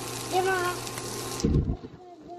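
Sausage patties sizzling in a frying pan, a steady hiss that cuts off abruptly about one and a half seconds in, with a low thump at that moment.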